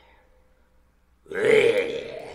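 Near quiet, then about a second and a half in a man lets out a sudden loud wordless vocal sound that fades away.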